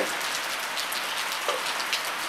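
Steady rain pattering on a corrugated metal roof: an even hiss made of many small drop ticks.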